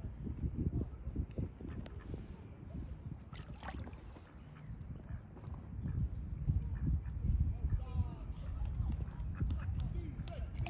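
Low, gusting rumble of wind buffeting the microphone over open water, with a short pitched bird call about eight seconds in.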